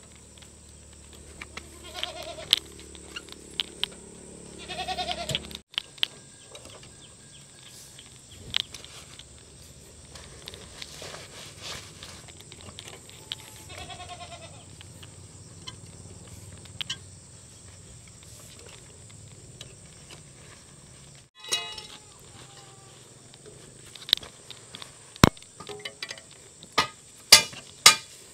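An animal bleating, three short wavering calls spread out over the first half, followed near the end by a run of sharp knocks and clinks.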